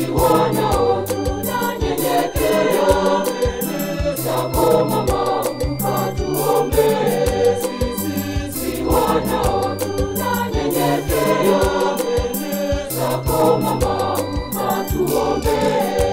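A church choir singing a Swahili Marian hymn in parts, over a bass line and a steady beat.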